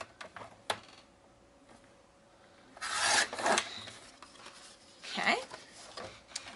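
Sliding paper trimmer cutting through kraft cardstock. A couple of sharp clicks as the sheet and blade carriage are set, then a loud rasping scrape of the carriage drawn along the rail about three seconds in, and a shorter scrape near the end.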